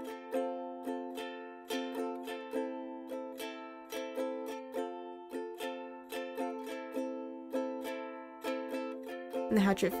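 Ukulele playing background music: a steady run of plucked notes and chords, a few each second.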